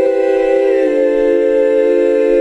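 Heavenly choir sound effect: several voices holding a sustained 'aah' chord, which shifts down to a lower chord about a second in.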